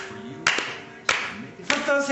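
A few slow, separate hand claps, three strikes about half a second apart, while the last acoustic guitar chord dies away in the first half-second.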